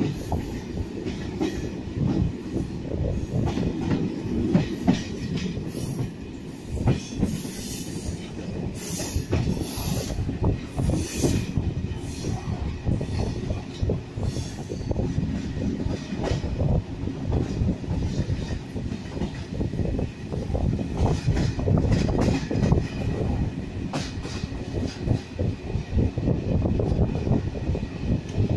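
TLK passenger train carriage running along the track, heard from inside the train: a steady rumble with irregular knocking and clattering of the wheels over the rails.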